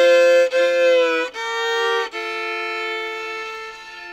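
Solo fiddle playing a country fill in bowed double stops, two notes sounding together: a double stop, then a change at about a second in and another at about two seconds, the last held and dying away near the end.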